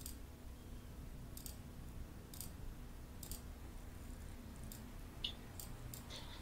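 About half a dozen faint, sharp clicks, roughly a second apart, from a computer mouse being clicked, over a low steady room hum.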